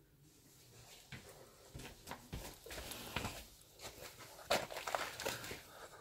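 Quiet rustling, scuffing and scattered irregular clicks of a person moving about and leaving the spot close to the camera.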